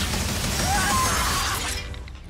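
Glass shattering and debris crashing in a movie sound mix, laid over music with a low pulse, fading out near the end.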